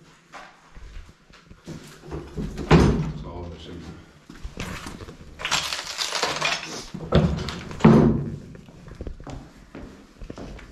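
Footsteps over a rubble-strewn floor, with a few sudden heavy thumps about three seconds in and again near eight seconds. In between there is a longer scraping rustle of movement, clothing or debris.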